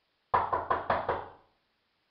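Knocking on a door: about five quick knocks in a row, starting a moment in and over about a second later.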